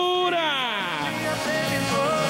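A man's long drawn-out shout over the arena PA, held on one pitch, then sliding down steeply in pitch during the first second, with music playing underneath.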